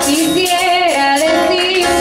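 A woman singing a worship song into a microphone, her voice holding and wavering on long notes over sustained instrumental chords.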